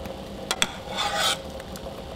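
A metal spoon clinks twice against a stainless steel pot, then scrapes and swishes through the cooking water as boiled mushroom pieces are scooped out.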